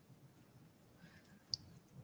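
Very quiet room tone with two faint short clicks about a second and a half in.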